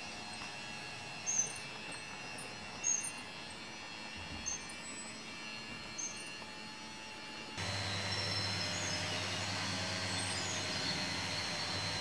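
Working Meccano model of a bucket-wheel excavator running: a steady mechanical hum with a high metallic tick about every second and a half. About seven and a half seconds in the sound turns louder, with a low motor hum added.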